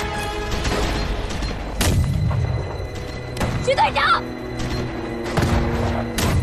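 Dramatic film music with sustained tones, cut by two heavy booms about two seconds in and again near the end, with a short vocal cry of a man just before the second boom.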